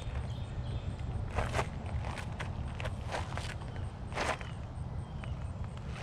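Scattered light scuffs and clicks on gravel, about eight over a few seconds, over a low steady hum, as a person moves about on foot.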